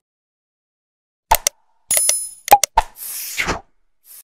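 Sound effects for a like-and-subscribe button animation. Silence for about a second, then sharp clicks and pops, a short bell-like ding about two seconds in, and a whoosh near the end.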